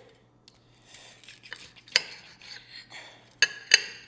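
A knife sawing through the crispy panko crust of a fried pork cutlet, a faint crunchy rasp. The steel knife and fork clink sharply on a ceramic plate once about halfway, then twice in quick succession near the end.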